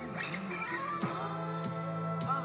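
Live band music with steady sustained tones; a low held note comes in about a second in.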